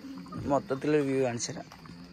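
A person's voice for about a second, starting a quarter second in, its pitch falling.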